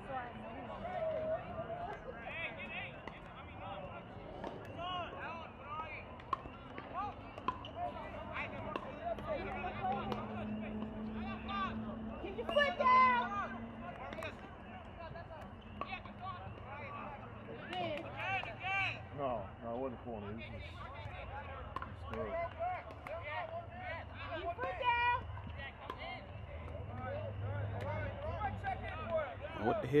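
Distant voices calling and shouting across a soccer field during play, with a few louder shouts standing out, the loudest near the middle.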